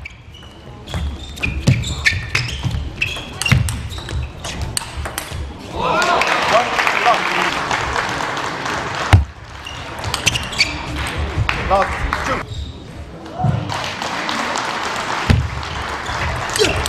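Table tennis rally: the ball clicks off the bats and the table in quick strokes. When the point ends, a shout rises with cheering and applause in the hall for about three seconds. Then come scattered ball bounces and, near the end, the clicks of the next rally.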